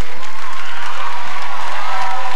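Studio audience applauding and cheering, a dense steady clapping with a few voices calling out.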